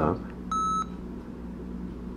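Sony ICD-SX733 digital voice recorder giving one short, high electronic beep as its stop button is pressed, ending a recording.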